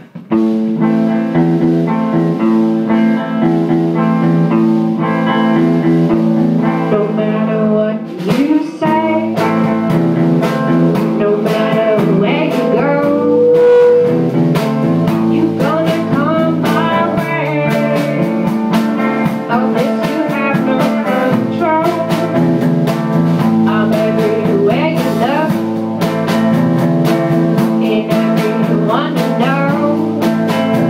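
Live band song: guitar chords start suddenly, and a woman's singing and sharp beats come in about eight seconds in and carry on.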